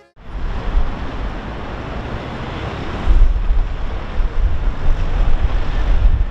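Steady rushing noise with a heavy, unsteady low rumble, growing louder about three seconds in.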